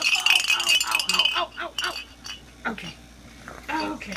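A small jingle bell shaken right up against the microphone, ringing for about the first second, with a run of laughter over it.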